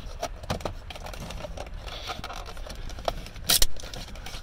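Small plastic clicks, scrapes and rattles as a car's instrument cluster is handled and worked at behind its housing to free the wiring connector, with one sharp clack about three and a half seconds in.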